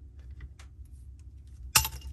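A gear puller is tightened on a raw water pump shaft with faint metallic clicks, then near the end comes a single sharp metallic crack with a short ring: the pump's drive gear breaking free of its tapered shaft.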